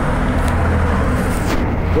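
Street traffic: car engine and road noise, with a low steady engine hum for a moment partway through.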